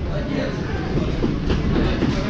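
Low rumble and knocks of boxers moving on the ring floor, picked up by a camera mounted on the ring, with spectators' voices behind.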